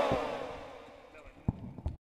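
Men's voices calling out devotional 'jai' slogans, fading out over about a second. Then two faint knocks near the end.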